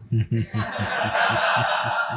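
Laughter after a joke: short rhythmic chuckles, about five a second, close to the microphone, with broader laughter from the room swelling in about half a second in.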